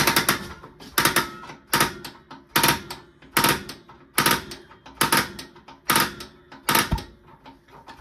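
RV gas range spark igniter clicking, a sharp tick a little more than once a second, while gas is turned on at the burner. The burner is slow to light because the range hasn't been used for a while.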